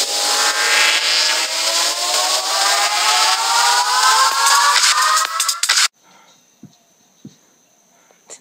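Intro sound effect: a loud rising sweep, several tones gliding slowly upward over a strong hiss, that cuts off suddenly about six seconds in. Faint room tone with two soft clicks follows.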